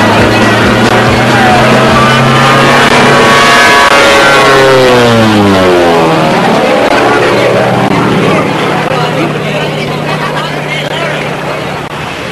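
Single-engine light propeller plane buzzing low overhead. Its engine note grows loud and high as it approaches, drops sharply in pitch as it passes about five seconds in, then runs on at a steady lower pitch, fading as it flies away.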